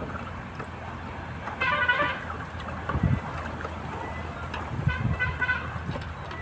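A bamboo stick stirring sugar into water in a plastic bucket, with dull knocks and swishes as it works the mix to dissolve the sugar. A short high-pitched tone sounds twice, about three seconds apart.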